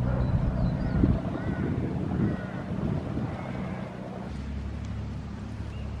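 Engine of a small passenger ferry boat running steadily out on the water, a low even hum. Wind rumbles on the microphone over the first few seconds, then eases.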